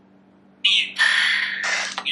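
Necrophonic ghost-box app playing through a phone's speaker: a harsh burst of static noise that starts a little over half a second in, with a steady tone running through its middle.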